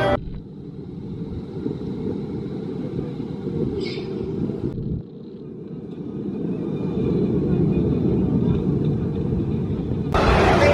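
A muffled, low rumble of outdoor background noise, with nothing clear or high-pitched in it; it drops suddenly about five seconds in, then slowly builds again.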